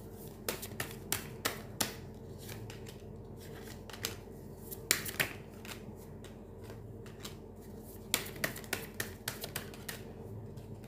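Tarot cards being dealt from the deck and laid down on a table: sharp snapping flicks of the cards in quick runs, a handful in the first two seconds, a louder pair about halfway, and a fast run near the end.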